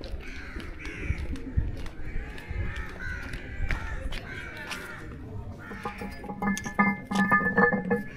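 Crows cawing over and over, the calls repeating through the first five seconds or so. Near the end a steady ringing tone with several pitches sets in and becomes the loudest sound.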